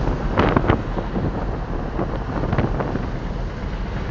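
Toyota pickup truck driving at highway speed, heard from inside the cab as a steady engine, road and wind noise, with a few brief knocks about half a second in. The truck is running with no check-engine light, and the owner says nothing is wrong with it.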